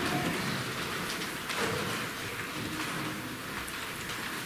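A steady, even hiss like rain, with a few faint soft tones beneath it.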